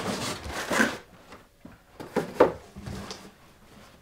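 Cardboard shipping box and its packing handled: rustling and scraping for about a second, then a few short knocks as the box is moved and lifted.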